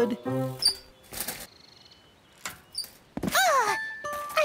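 Cartoon music and sound effects for a kitten falling off a small bicycle: a short run of notes and a swish, a quiet stretch with faint ticking, then a thump a little after three seconds followed by a short gliding cry.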